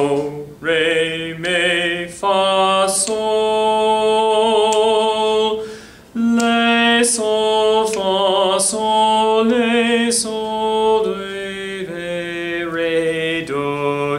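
A man singing a D minor sight-singing melody in solfège syllables, with long held notes and a short break about six seconds in; he messes up the melody, losing his place.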